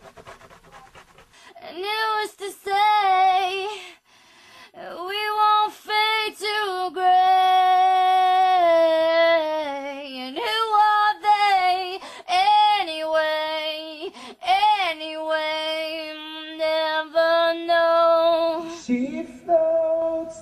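A woman's solo vocal take in a studio: one voice singing long held notes with slides between phrases, starting about a second and a half in, with no instruments heard.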